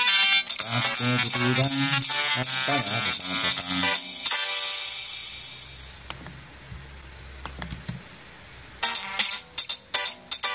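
Multitrack MIDI song arrangement playing back from a sequencer. It stops about four seconds in, and a sustained sound dies away over a low hum. The music starts again near the end with a sharp, rhythmic attack.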